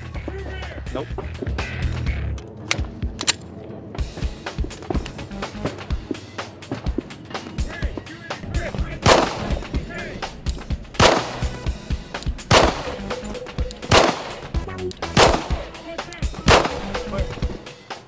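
Six pistol shots with .45 ACP 230-grain FMJ rounds, fired slowly at an uneven pace about one to one and a half seconds apart in the second half.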